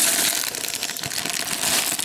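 Clear plastic bags of building bricks crinkling and rustling as they are handled, with small clicks of the plastic bricks shifting inside.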